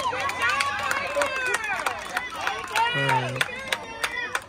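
Crowd of spectators and players shouting and cheering in high-pitched voices over one another, with scattered claps; a deeper adult voice calls out briefly about three seconds in.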